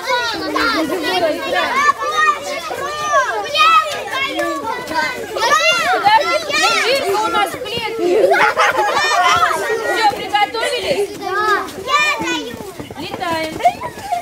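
A group of young children talking and shouting over one another during an outdoor circle game, with high-pitched shrieks about six and nine seconds in.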